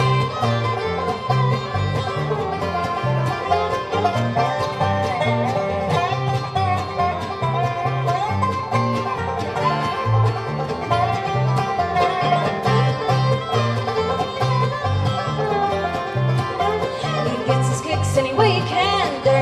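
Live acoustic bluegrass band playing an instrumental break with no singing: banjo, mandolin, acoustic guitar, fiddle, dobro and upright bass together, over a steady walking bass line, with a sliding melody on top.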